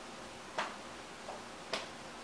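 Two light taps, a little over a second apart, with a fainter one between, as comic books are handled and set down on a wooden tabletop.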